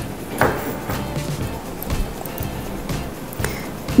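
Background music, with no clear sound of the work.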